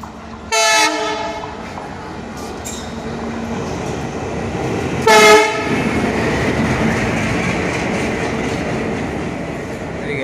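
Indian Railways diesel locomotive running light at speed through a station. It gives two short horn blasts, one about a second in and a louder one about five seconds in, then the rumble and clatter of the engine passing close swells and holds.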